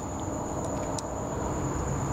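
Steady low hum and hiss of workshop background noise with a constant faint high-pitched whine, and one faint tick about a second in.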